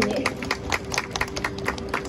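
A small street audience clapping: quick, scattered hand claps from several people.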